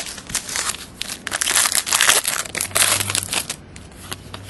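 Foil trading-card pack wrapper crinkling and tearing as it is opened by hand: a run of irregular crackles that stops a little before the end.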